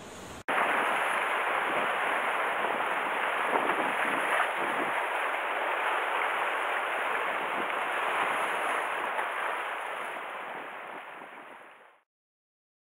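Steady rushing noise of sea surf, starting suddenly half a second in and fading out near the end.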